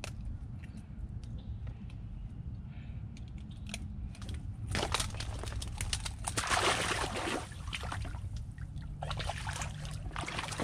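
Shallow pond water sloshing and splashing as a small snakehead is lowered back into the water by hand and released. The splashes come in bursts about five seconds in, again around six to seven seconds, and near the end.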